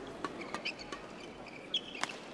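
Indoor badminton hall ambience between rallies: a low, even crowd murmur with scattered sharp taps and a few short high-pitched chirps, the loudest tap near the end.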